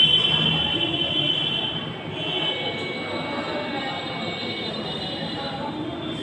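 A steady, high-pitched whistle-like tone held for about two seconds, breaking off briefly, then sounding again until the end, over a low murmur of voices.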